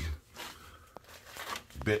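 Faint rustling and handling noise, with one light click about a second in, between a man's words.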